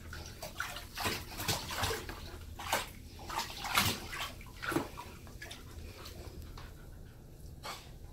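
Bathwater splashing and sloshing in a bathtub as a husky puppy is bathed. The splashes come irregularly, loudest about four seconds in, then turn quieter with one last splash near the end.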